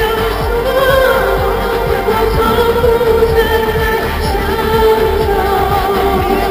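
A song: a sung melody over a sustained instrumental accompaniment.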